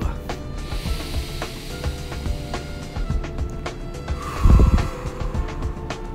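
Soft background music with steady held notes, with a slow deep breath drawn in and then blown out, the out-breath rushing loudly onto the microphone about four and a half seconds in.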